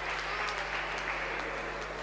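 Light applause and crowd noise in an indoor sports hall, greeting a futsal goal. A low steady hum runs underneath.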